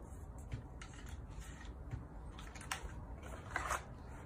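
Hands handling small plastic phone accessories and packaging: scattered light clicks and taps, with a short rustle a little before the end.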